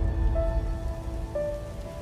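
Intro music: held synth notes that change pitch partway through, over a dense, steady, noisy rumble and hiss.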